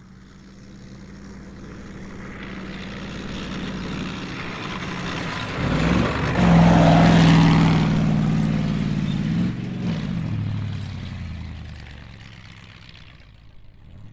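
A heavy motor vehicle's engine drone approaching, passing close with its pitch shifting about halfway through, then fading away.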